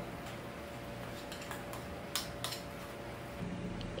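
A few faint, short clicks and taps of a metal spoon and a small stainless steel bowl as ground beef is packed into it for a burger patty, over a faint steady hum.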